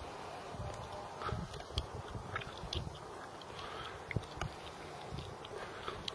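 Handling noise from a handheld camera: irregular soft thumps and small clicks over a steady background hiss.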